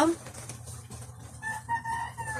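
A rooster crowing faintly: one long held call that begins about halfway through, over a steady low hum.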